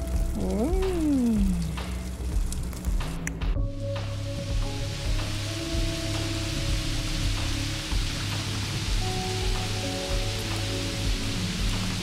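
Background music with held notes. From about three and a half seconds in, there is the steady hiss of rain falling.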